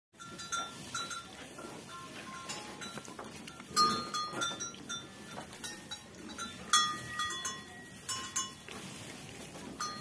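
Cow bell clinking irregularly: many short ringing notes at the same few fixed pitches, a clink every half second or so.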